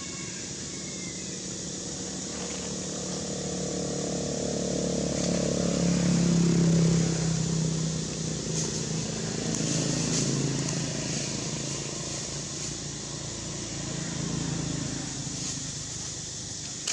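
A motor vehicle's engine passing, a low hum that swells to its loudest about six or seven seconds in and then fades, with smaller rises afterwards.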